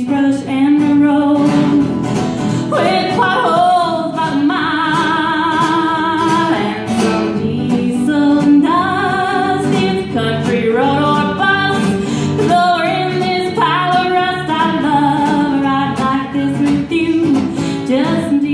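A woman singing a country song live, holding some notes with vibrato, while strumming an acoustic guitar.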